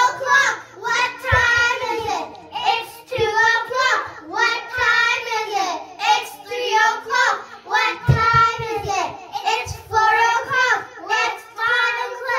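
A group of children singing a song together into microphones.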